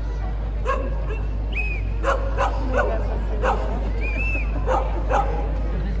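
Dog-like yapping: short sharp yips, one early, then a quick run of them and a couple more near the end, with two brief rising-and-falling whistle tones in between.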